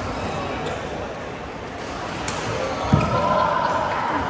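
Badminton being played: footfalls thudding on the court floor, the heaviest about three seconds in, and a few sharp racket hits on the shuttlecock, in a large echoing hall with people talking.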